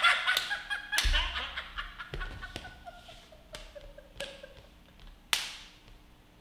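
People laughing after a joke's punchline, the laughter dying away over the first few seconds. Several sharp smacks come through the laughter; the loudest is about five seconds in.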